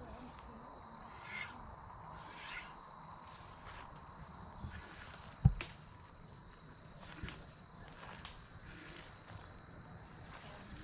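Steady high-pitched drone of insects in a pasture, with two faint calls in the first few seconds. A single sharp thump about halfway through is the loudest sound, followed by a couple of light clicks.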